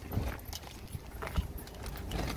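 Shopping being loaded into a car boot: a few light knocks and rustles of bags and boxes being set down, over a low steady rumble.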